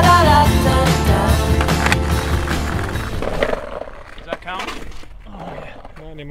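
A rock song with singing plays, then fades out about halfway through. After it, skateboard wheels roll on concrete with a few sharp clacks of the board, and faint voices can be heard.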